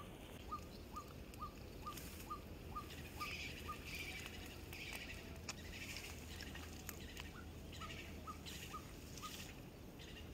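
A bird calling repeatedly: one short, slightly falling note about two or three times a second, pausing for a few seconds midway.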